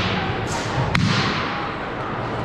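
Sharp impacts from a wushu competitor's routine on a gym's hardwood floor: a softer one about half a second in and a sharp one about a second in, each echoing in the large hall.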